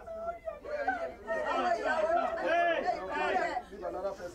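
Several people's voices talking over one another, with one voice rising and falling steeply in pitch in the second half.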